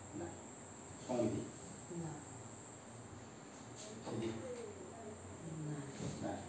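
A steady high-pitched insect trill, like crickets, in the background, with a few short voiced sounds from people in the room, the loudest about a second in.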